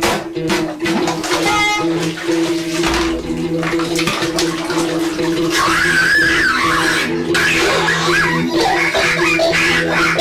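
Experimental sound-collage music: steady low drones under splashing, sloshing bath water. From about halfway through, wavering, warbling higher tones join in.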